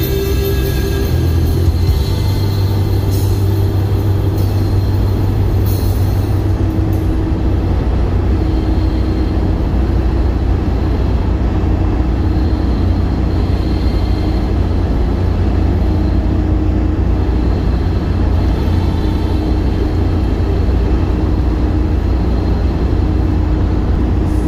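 Steady low road and engine rumble inside a car's cabin at highway speed, with music playing over it.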